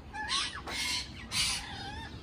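Caged pet birds, parrots among them, squawking: three harsh calls about half a second apart, mixed with short whistled notes.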